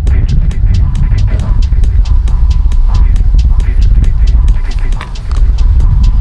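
Ford Mustang's engine and exhaust giving a steady low rumble as the car rolls slowly past, with a fast run of light ticks over it.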